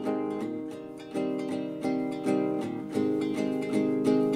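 Guitar intro: plucked notes in a steady pattern, each new note or chord attacking every half second or so, gradually getting louder.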